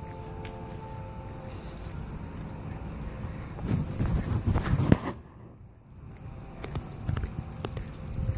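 A church bell's ringing fades away over the first second or two. From about three and a half seconds in come dull thumps and light jingling, with a short lull just after five seconds.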